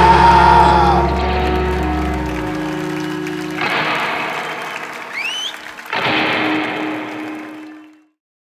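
Final chord of a live rock band ringing out and dying away, then a crowd cheering and clapping in two waves, with a rising whistle about five seconds in. The sound fades out near the end.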